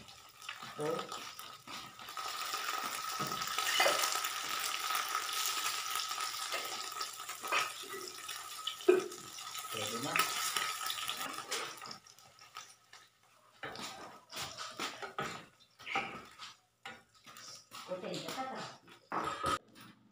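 Eggs sizzling in an oiled frying pan while a spatula scrapes and turns them, with a few clinks of the utensil on the pan. About twelve seconds in, the sizzle drops away, leaving only scattered light knocks and clinks.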